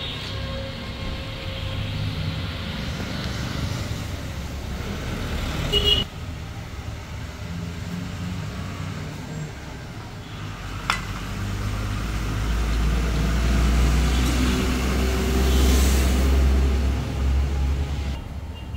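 A motor vehicle's engine rumbling steadily nearby, growing louder through the second half. Two sharp clicks cut through it, one about a third of the way in and one about two thirds in.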